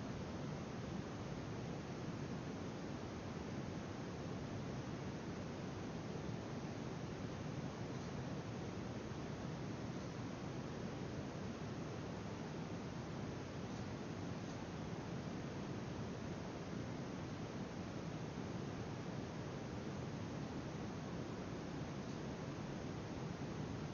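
Steady low room noise with a hiss, and a couple of faint clicks about eight and fourteen seconds in.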